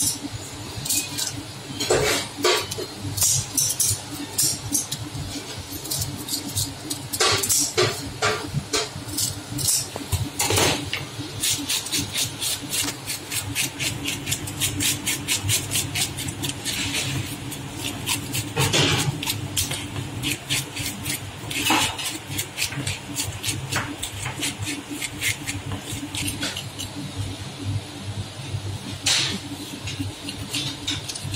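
A hand scaler scraping the scales off a tilapia in quick strokes, a few at first and then a fast, even run of about five a second, over a steady low hum.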